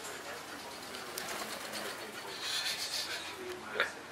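A duck's wings flapping in flight, a run of wingbeats, then a short sharp splash near the end as it lands on the swimming-pool water.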